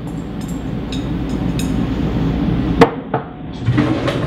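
Shredded carrots and onions sizzling as they are tipped from a glass bowl into a hot, oiled sauté pan, building as more goes in. Nearly three seconds in comes a single sharp clink of the glass bowl, then a fainter click.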